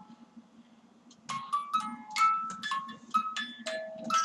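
A simple tinkling tune of short, high notes from a musical toy, starting about a second in after a near-quiet moment.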